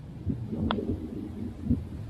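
A single short click of a putter striking a golf ball, about two-thirds of a second in, over a low outdoor rumble.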